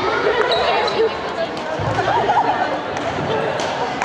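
People talking in a large, echoing sports hall, with a few light footfalls and knocks on the wooden court floor as a badminton player moves between points.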